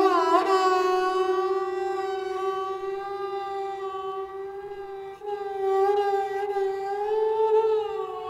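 Sarangi bowed on one long held note, played with andolan, a slow, wide vibrato that makes the pitch sway gently up and down. The note swells louder again about five seconds in.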